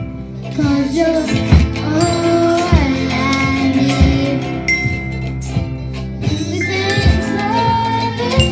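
A class of children playing along to a song on ukuleles, a glockenspiel and keyboards, with singing over a steady beat.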